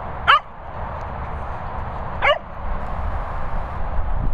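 A dog gives two short, high yelps about two seconds apart, each falling in pitch, over a steady background hiss.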